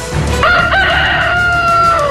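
A rooster crowing: one long crow that starts about half a second in, holds its pitch and dips slightly at the end, over background music.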